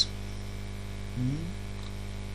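Steady electrical mains hum in the recording, with a short murmured voice sound a little over a second in.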